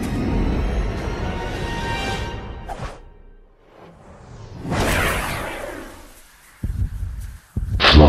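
Animated-film sound effects over music: whooshes, with a loud swelling whoosh about five seconds in, then two sharp thumps near the end.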